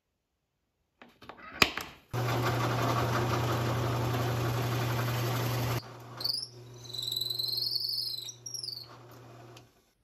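A drill press running, its twist bit boring into a segmented wood pen blank: a loud, steady cutting noise over the motor hum, which falls quieter about six seconds in while a wavering high squeal comes and goes for about three seconds, then the motor stops shortly before the end. A single sharp click comes just before the drilling starts.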